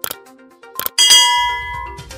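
Subscribe-button sound effect: a couple of mouse-style clicks, then about a second in a bright bell ding that rings on and slowly fades.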